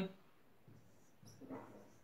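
Faint squeak and scratch of a marker writing on a whiteboard in a quiet room, with a couple of short, weak squeaks around a second and a half in.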